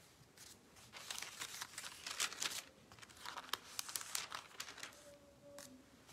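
Thin Bible pages rustling and crinkling as they are handled and turned, a quiet run of short crackles from about a second in until near the end.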